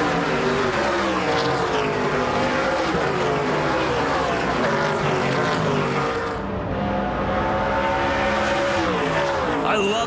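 A pack of NASCAR Pinty's Series stock cars with V8 engines racing past at speed, several engine notes overlapping and rising and falling in pitch. The sound thins out briefly about six and a half seconds in, then builds again as the next cars approach.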